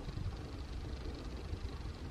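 Heavy rain pouring down, heard as a steady hiss over a low rumble.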